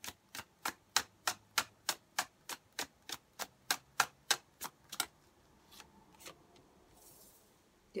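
A tarot deck being overhand-shuffled: crisp slaps of card on card, about three a second, stopping about five seconds in, then a few softer handling sounds.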